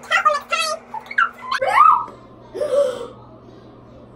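A woman's voice making short wordless vocal noises and exclamations, one rising in pitch like a squeal about a second and a half in, over a steady low hum.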